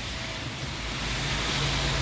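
Road traffic on a wet street: steady tyre and engine noise that grows gradually louder, as of a car approaching.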